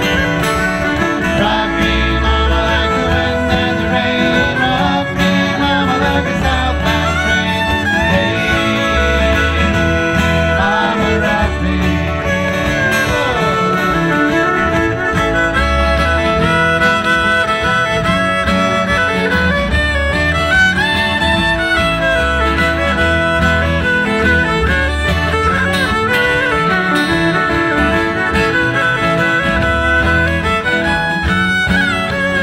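Live acoustic country-folk band playing an instrumental passage: bowed fiddle with strummed acoustic guitar, banjo, bodhrán-style frame drum and bass guitar, at a steady beat.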